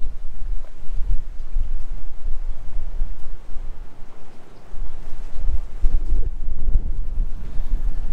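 Strong, gusty wind buffeting the microphone: a loud, uneven low rumble that eases off for about a second around the middle.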